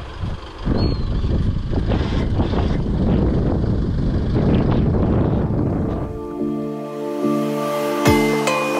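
Rushing, gusty noise of wind on the microphone. About six seconds in, it gives way to background music with sustained notes.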